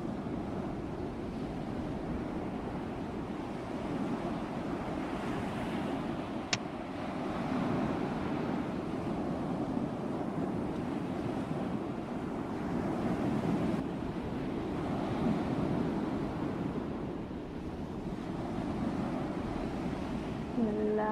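Sea surf breaking and washing onto the beach in slow swells, with wind on the microphone. One brief click sounds about six and a half seconds in.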